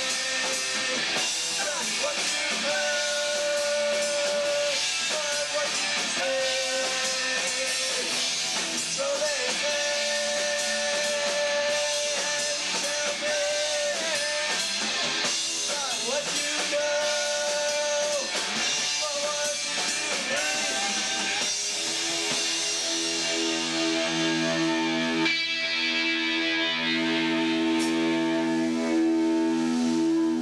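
A punk band playing live: electric guitars, bass guitar and drum kit. About twenty-two seconds in the drums stop and the guitars are left ringing on long sustained chords.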